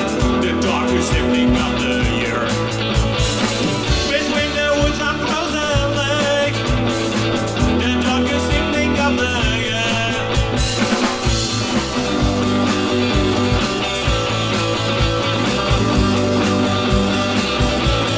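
A rock band playing live: electric guitars, bass and drum kit, with a voice singing in places.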